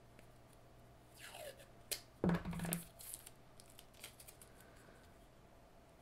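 Washi tape peeled off its roll and torn off by hand: a short scraping peel about a second in, then a louder rip just after two seconds, with a few small handling clicks.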